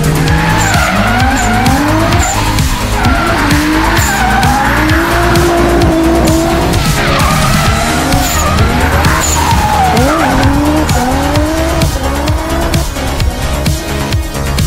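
Toyota Supra drift car's 1JZ straight-six revving up and down over and over, its pitch rising and falling through each slide, with tyres skidding. Background music with a steady beat runs underneath.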